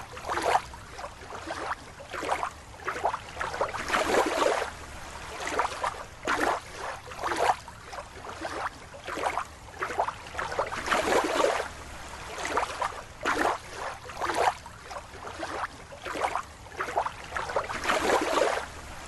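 Water splashing and sloshing in irregular bursts, about one a second.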